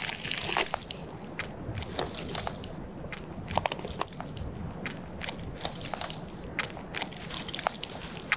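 Amur leopard feeding on a frozen deer carcass: irregular crunching and tearing as its teeth bite into hide, flesh and bone.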